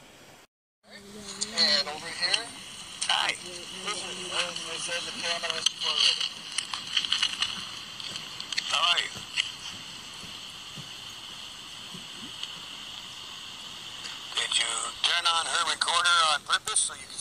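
A spirit box sweeping through radio stations, played through a small X-mini capsule speaker: a steady hiss of static broken by short, chopped-up fragments of voices and clicks. The sound cuts out completely for a moment about half a second in.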